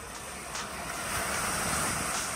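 Surf washing onto a sandy beach, a steady rush that swells in the second half.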